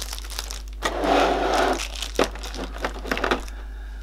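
Clear plastic packaging crinkling as it is pulled out of a cardboard box, followed by a few light clicks and taps.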